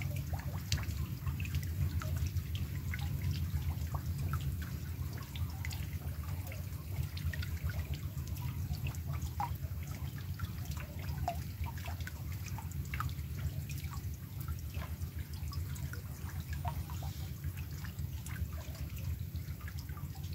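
Rain falling on a fish pond's surface, the drops landing as scattered, irregular drips over a steady low rumble.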